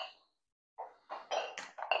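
A man's short, forceful breaths, several quick puffs of air in the second half, as he strains through dumbbell curls.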